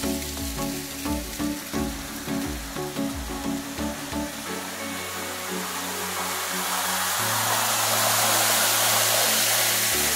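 Chillout electronic music with a steady beat, joined from about halfway by a growing rush of falling water that is loudest near the end: a waterfall pouring down a cliff face onto the road beside the car.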